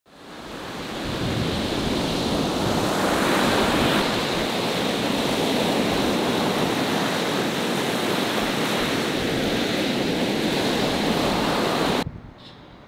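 Ocean surf: a steady wash of breaking waves that fades in over the first second or so and stops abruptly at the end.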